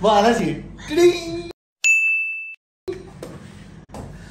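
A man's voice briefly, then a single bright ding sound effect about two seconds in: one steady high tone that lasts under a second and stops abruptly.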